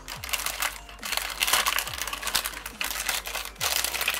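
A thin clear plastic bag crinkling and rustling as a hand rummages in it and draws out small bottles, with irregular crackles throughout.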